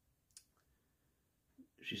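A single brief, faint click about a third of a second in, with near silence around it; a man's voice starts right at the end.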